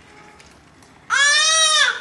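A toddler's single high-pitched squeal, starting about a second in and lasting under a second, its pitch arching up and then down.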